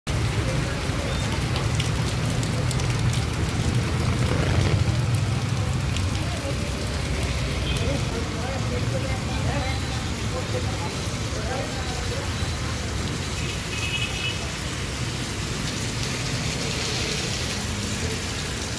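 Heavy downpour on a paved street: a steady hiss of rain hitting wet pavement and standing water. Under it runs a low rumble of passing traffic, strongest in the first few seconds.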